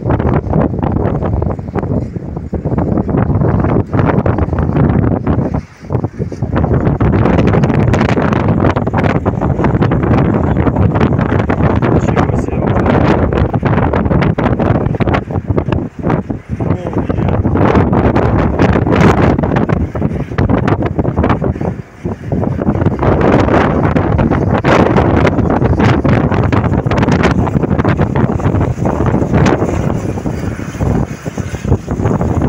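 Strong, gusty wind buffeting the microphone: a loud, uneven rush that briefly drops away a few times.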